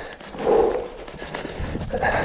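Mountain biker breathing hard on an uphill singletrack climb: a loud, heavy exhale about half a second in and another at the end, over the rumble and clatter of the bike on the rocky dirt trail.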